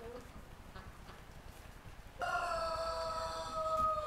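A rooster crowing once: one long call of about two seconds that starts suddenly about halfway through and drops in pitch at the end.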